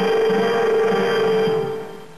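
Closing music: one held chord that fades out near the end.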